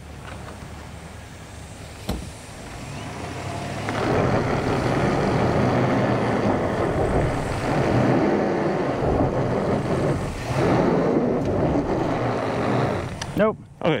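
Chevrolet Silverado ZR2 Bison's 6.2-litre V8 pulling under load as the rear tyres spin on loose rock and gravel, the truck held back at a rocky step for lack of grip. It starts fairly quiet, grows louder about four seconds in, and eases briefly about ten and a half seconds in.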